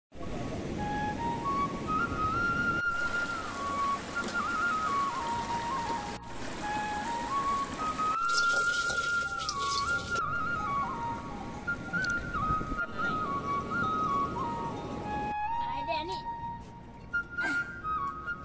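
Background music: a solo flute melody moving up and down in steps, with ambient noise beneath it.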